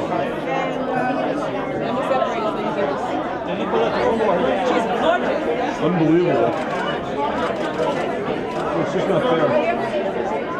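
Many people talking at once: steady overlapping chatter of a crowd, with no one voice standing out.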